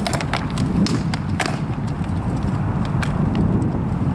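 Rattan swords striking shields and armour in a sparring exchange: a quick flurry of sharp clacks in the first second and a half, then a few single strikes, over a steady rumble of wind on the microphone.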